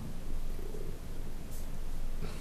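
No speech: steady room noise picked up by the microphone, an even hiss with a low hum underneath and no distinct event.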